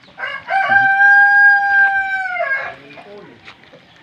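A rooster crowing once: one long crow held for about two seconds, rising at the start and falling away at the end.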